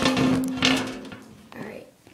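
Camera being grabbed and knocked about: a few bumps and rubbing noises in the first second, mixed with a short held voice sound, fading off in the second half.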